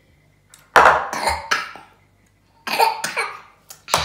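A child coughing in two loud, rough bouts after a gulp of fruit drink, with a short knock just before the end.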